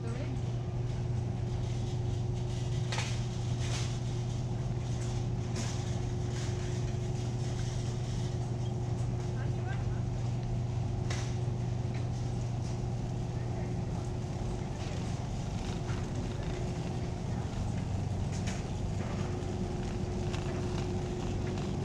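Steady low hum of a large warehouse store with a faint constant higher tone, a few short sharp clicks and rattles, and background voices.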